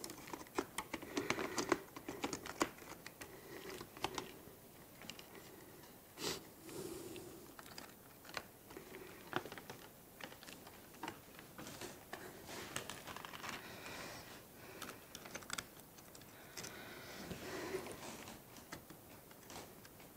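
Faint, irregular small clicks and rattles of plastic parts and wiring being handled inside an opened FrSky Taranis X9D radio transmitter, with a few short rustles.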